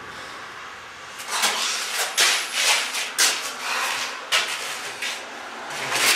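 A run of irregular scraping, rubbing and knocking noises, starting about a second in, after a short lull.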